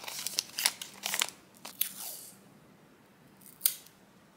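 Handmade paper envelope folded and creased by hand, crinkling with quick sharp crackles for about two seconds, then quiet apart from a single sharp click near the end.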